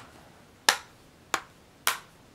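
Plastic back cover of a Dell Venue 11 Pro tablet snapping onto its retaining clips as it is pressed down: three sharp clicks, roughly half a second apart.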